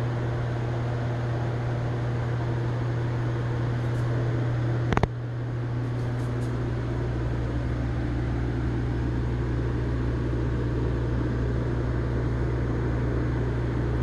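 A steady machine hum with a strong low drone and a haze of noise over it. A single sharp click comes about five seconds in, after which a deeper low hum joins and carries on.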